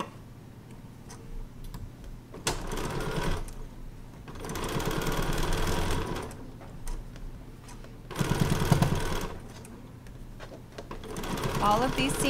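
Domestic sewing machine stitching the last seam of a half-square-triangle quilt block. It runs in three short bursts with pauses between them, and starts a fourth near the end.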